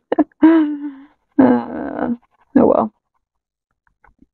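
A person's voice making several short wordless sounds, among them one held hum-like tone about half a second in, then a rougher, groan-like one, with nothing said in words.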